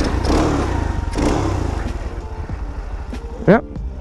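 Boom Vader 125cc single-cylinder four-stroke engine running with no exhaust fitted, revved twice in the first second and a half and then settling back to a steady idle.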